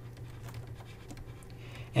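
Faint, light ticks and scratches of a stylus writing on a tablet, over a low steady hum.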